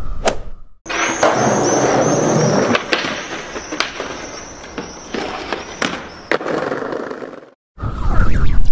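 A brief electronic sound effect in the first second. Then a skateboard rolling and grinding on a stone ledge and paving, loudest for the first couple of seconds, with several sharp clacks of the board.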